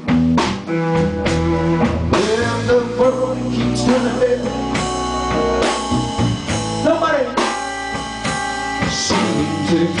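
Live blues band: electric guitar plays fills with bent notes over electric bass and drums between vocal lines. The singer comes back in near the end.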